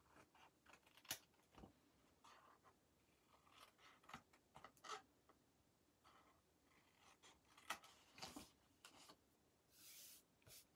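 Faint, scattered snips of small craft scissors cutting short slits into thin designer series paper along its score lines, with light paper rustling between the cuts.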